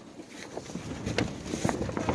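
Storm wind buffeting the canvas of a pop-up camper, heard from inside: a rustling noise with scattered light ticks, faint at first and building over the second half.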